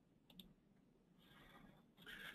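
Near silence: room tone, with one faint click a little after the start.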